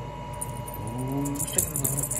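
A short, drawn-out voice sound without words, then a few light jingling clicks about one and a half seconds in.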